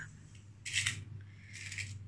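Small metal stitch markers being picked through in a little tin: two short, high-pitched scraping rustles, one just before the middle and one near the end, over a low steady hum.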